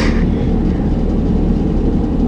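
A loud, steady low hum and rumble with no break, a machine-like background drone.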